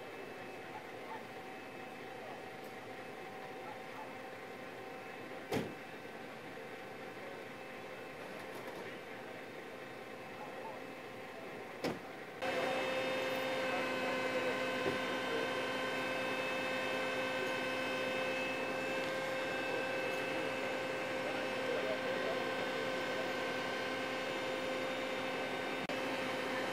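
Steady hum of emergency vehicles idling at a crash scene, holding a few steady tones, with two sharp clicks in the first half. About halfway it steps up into a louder, nearer hum from fire trucks idling close by.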